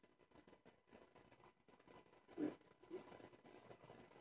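Near silence: room tone, broken about halfway through by two brief, quiet vocal sounds.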